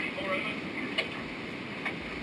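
VHF marine radio exchange with the Coast Guard: a faint voice briefly, then steady background noise, with a sharp click about a second in and a smaller one near the end.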